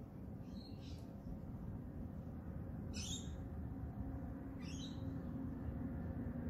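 A bird giving a few short, high, downward-sweeping calls: one about a second in, one at about three seconds, one near five seconds. A steady low background hum runs underneath.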